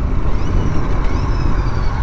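Royal Enfield Continental GT 650's parallel-twin engine running steadily under way, heard from the bike itself.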